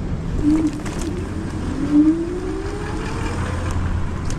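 Dualtron Thunder 3 electric scooter riding over pavement: a steady low rumble of tyres and wind, with the hub motors' whine rising in pitch from about one and a half seconds in as the scooter speeds up.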